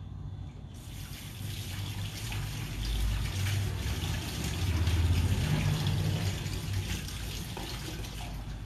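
Kitchen tap turned on about a second in, water running from the faucet and splashing into the sink as cups are rinsed under it. A low rumble swells in the middle and is loudest about five seconds in.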